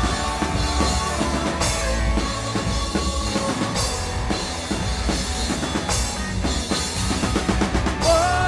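A live rock band playing loud, with the drum kit to the fore: bass drum, snare and cymbal crashes about every two seconds over sustained electric bass and guitar.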